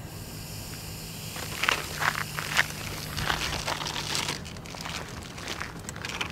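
Hands working at a plastic soda bottle and its small packet: irregular crinkling and rustling with light clicks, starting about a second and a half in, over a steady low hum.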